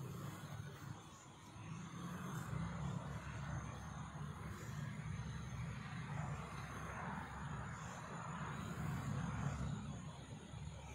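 Steady rumble of road traffic with a hiss over it, swelling about two seconds in and easing off near the end.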